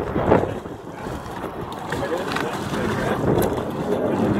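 A hooked bluefish splashing and thrashing at the water's surface beside the boat as it is reeled in, with wind on the microphone.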